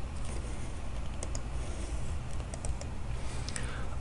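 A few faint, scattered computer keyboard clicks over a low steady hum.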